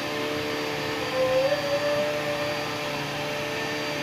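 Upright vacuum cleaner running with its hose attachment in use: a steady motor hum and whine, its pitch rising slightly for about a second partway through.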